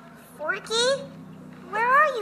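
A young girl's high-pitched, wordless voice: a few short cries that rise and fall in pitch.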